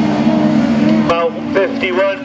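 Engines of a pack of autograss race cars running hard around a dirt track, a steady overlapping drone of several engine notes, with short bits of loudspeaker commentary about a second in and near the end.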